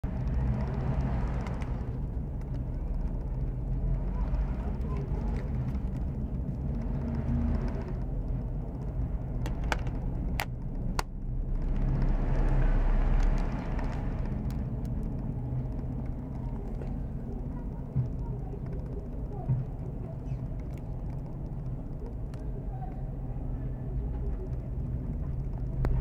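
Steady low rumble with slow swells, like background road traffic, and a few sharp clicks near the middle as the plastic phone handset is handled.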